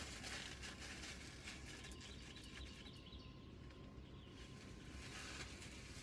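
Faint, steady background noise with a low rumble and a thin steady tone, plus a few small soft clicks or rustles in the first second.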